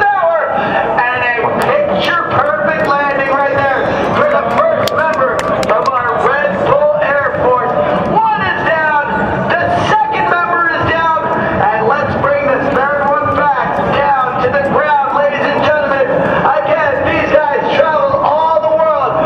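A man's amplified voice over the event's public-address loudspeakers, talking without a break.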